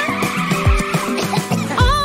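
Cartoon dash sound effect, a skidding whoosh that fades out about a second in, over a children's song backing track with a steady beat.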